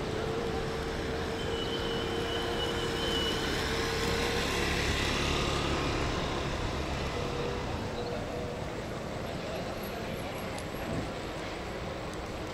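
Street traffic noise with a motor vehicle passing, swelling to its loudest about four to five seconds in and then fading back.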